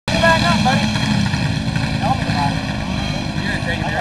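Steady low rumble of engines, with short snatches of people's voices over it and a steady thin electrical whine in the recording.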